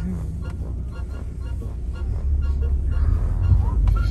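Low, steady road rumble inside a moving car's cabin, growing a little louder about two seconds in.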